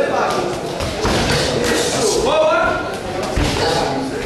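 Voices of spectators calling out over one another around a boxing ring, with two dull thuds, one about a second in and a stronger one near the end.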